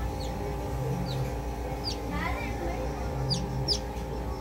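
A newly hatched chick peeping in about five short, high, falling chirps, over steady background music.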